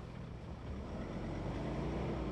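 Vehicle driving along a wet dirt road: steady engine and tyre noise, with a faint engine tone rising slightly in the second half.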